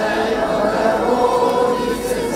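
A choir singing a slow church chant in long held notes.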